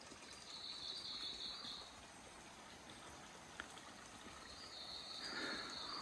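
An insect buzzing faintly: two high, steady buzzes, the first about a second long near the start and the second starting in the last second and a half. A single faint tick midway.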